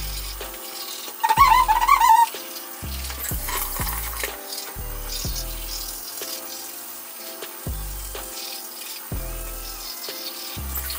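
Scratchy scrubbing of a manual toothbrush on teeth under background music with recurring deep bass notes. A short, high melodic phrase about a second in is the loudest part.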